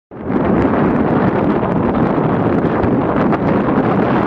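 Steady wind buffeting the microphone, mixed with road noise, as the camera is carried along a highway in a moving vehicle.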